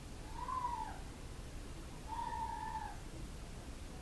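Two short pitched animal calls over a quiet room: the first, under a second in, rises and falls; the second, about two seconds in, is longer and nearly level.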